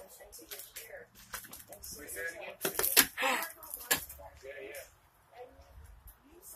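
Footsteps crunching and cracking on a debris-strewn floor, mixed with low, indistinct talking. There are a few sharp cracks between about three and four seconds in, and the loudest comes near three seconds.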